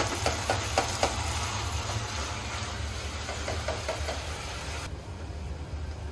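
Potatoes and peas hissing in a pot on a gas stove, with a plastic spatula clicking and scraping against the pot as they are stirred, over a steady low hum. The hiss thins out abruptly near the end.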